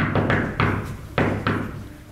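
Loud knocking, four knocks in two pairs about half a second apart with a pause between the pairs, each ringing out briefly in the hall.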